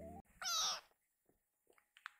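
A young kitten meows once, a short high call about half a second in. Faint small clicks follow.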